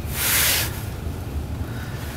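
Steady low rumble of a truck heard inside its cab, with a brief hiss lasting about half a second at the very start.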